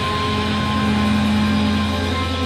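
Live band playing loud amplified music: distorted electric guitar and bass hold a long, sustained note over a steady low drone.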